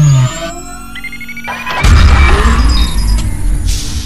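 Electronic intro sound design: a falling synth sweep dies away at the start, followed by steady electronic tones and beeps. A sudden deep booming hit lands about two seconds in and slowly fades.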